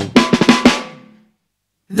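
Funk band's drum kit hitting a quick run of snare and bass drum strokes that ring out into a full stop of about half a second of silence. The whole band comes crashing back in right at the end.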